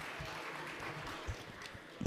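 Applause in a large chamber: a steady spread of clapping with a few low thumps among it.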